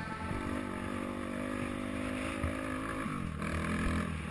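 An off-road vehicle's engine running at a steady speed under way, its pitch falling a little past three seconds as the throttle eases off.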